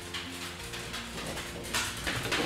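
Soft background music with steady held notes, and a brief rustle near the end as hair is sectioned with a comb.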